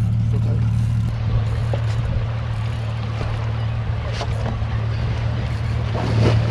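Boat's outboard motor running with a steady low hum, with wind and water noise around it.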